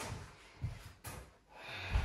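A woman's breathing close to a headset microphone after a barbell set, with low thuds as the weighted barbell and its plates are lowered onto a floor mat, the heaviest thud near the end.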